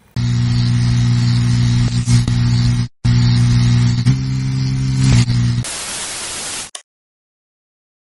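Glitchy electronic intro sound effect: a loud, steady low buzz under static hiss, cut off for an instant about three seconds in, ending in a short burst of plain white-noise static about six seconds in, then dead silence.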